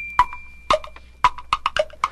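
Wood-block clicks like a clock's ticking, coming at an uneven rhythm, as a high steady bell tone that started just before fades out in the first half-second or so. This is a percussion break in a 1960 song recording.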